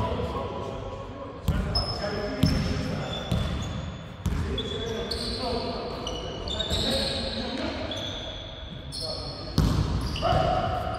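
Basketball bouncing on a hardwood court, with a few sharp thuds and short high sneaker squeaks in between, echoing in a large sports hall.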